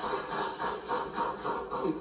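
A person's voice, quieter than the talk around it, in quick, evenly repeating syllables.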